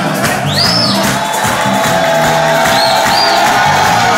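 Live makossa band playing, with bass, guitar and drums, heard from within a cheering crowd in a reverberant hall. A long note is held through most of the stretch, with a few high swooping sounds over it.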